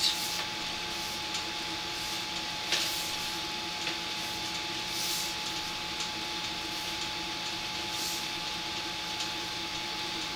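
Steady mechanical hum with a constant thin whine running under it, broken by a few faint knocks.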